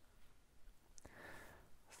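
Near silence: room tone, with a single faint click about a second in and a faint breath just after it.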